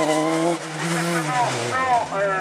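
Open-wheel single-seater race car's engine running hard at high revs as it pulls out of a hairpin, the pitch dropping briefly about halfway through.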